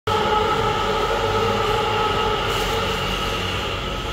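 Steady, monster-like mechanical drone, several held tones over a low hum, from an LENR reactor running during its excess-heat process, as the on-site explanation has it.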